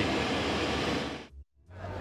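Steady rushing noise of an airport apron with a parked airliner close by, which fades out about a second and a quarter in. A moment of silence follows before sound comes back near the end.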